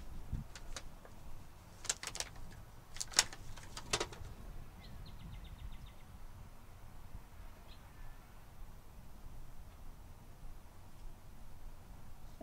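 A few sharp clicks and snaps from garden scissors being handled and snipped, spread over the first four seconds, then a short burst of rapid fine ticking about five seconds in. A steady low rumble runs underneath.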